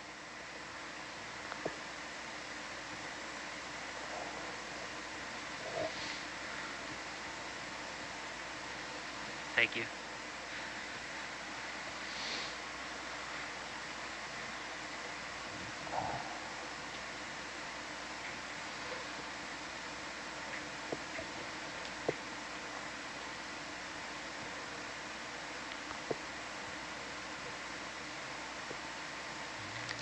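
Steady hiss and faint hum of the ROV control room's open audio feed, with a few brief faint clicks and blips, the loudest about ten seconds in.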